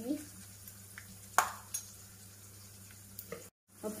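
Almonds, cashews and curry leaves sizzling softly in hot oil in a kadhai, with one sharp click about one and a half seconds in and a few lighter clicks. The sound cuts out briefly near the end.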